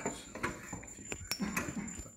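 Handheld microphone being handled and passed over: a series of short knocks and bumps about every half second, over a steady faint high electrical whine.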